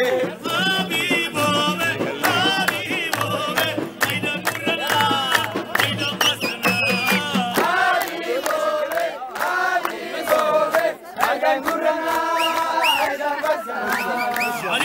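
Nubian wedding zaffa music: a group of voices singing together over many hands clapping, with a steady low drum beat that drops out a little past halfway while the singing and clapping go on.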